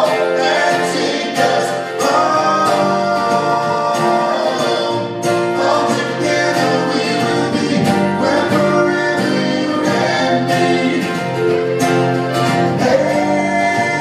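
Live acoustic folk song: a man singing sustained notes into a microphone over strummed acoustic string instruments.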